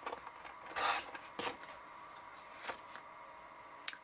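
Sliding-blade paper trimmer cutting a sheet of patterned paper: a short rasping stroke of the blade about a second in, the loudest sound, and a shorter one just after, then a few light clicks as the paper is handled.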